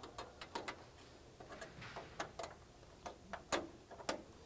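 Faint, irregular small clicks and taps of a metal filler plate being handled and pressed into the old strike hole in a door frame.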